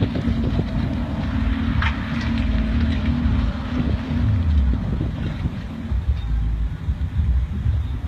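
A 4x4 off-road vehicle's engine working under load as it climbs a steep dirt slope. It holds a steady drone that fades over the last couple of seconds, with wind rumbling on the microphone.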